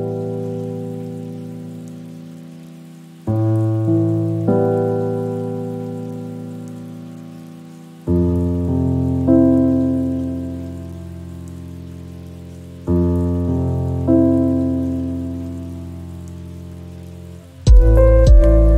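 Slow relaxation music: soft sustained chords struck about every four seconds, each fading away, over a faint steady hiss of rain. A louder chord comes in near the end.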